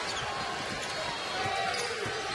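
Steady crowd noise in a basketball arena, with a basketball being dribbled on the hardwood court.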